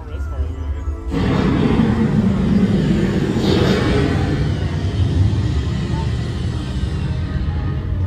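Dark-ride soundtrack from the ride's speakers: ominous music that swells suddenly about a second in and stays loud, with a heavy low rumble underneath.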